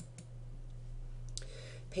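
Two short computer clicks about a second apart, advancing the lecture slide, over a steady low electrical hum.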